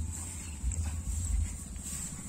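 Walking through a rice paddy: wind rumbling on the microphone, with a couple of soft footsteps on a grassy path and a steady thin high-pitched hum.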